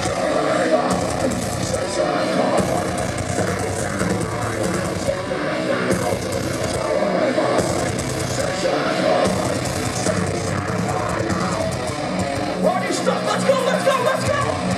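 Heavy metal band playing live at full volume, with electric guitars and drums, heard from within the audience.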